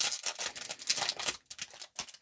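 Plastic wrappers of trading-card packs crinkling and rustling in the hands as the packs are handled and laid down, in irregular crackles.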